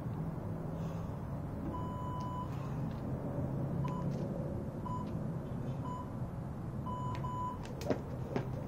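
Electronic beeps at one pitch, in the pattern of an interval timer's countdown: one long beep, then three short beeps a second apart and a final longer double beep, over a steady low hum. The first slap of the jump rope on the asphalt comes right at the end.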